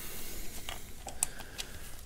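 A few light clicks and taps of small metal parts being handled and fitted by hand on the engine's injection pump housing, mostly around the middle.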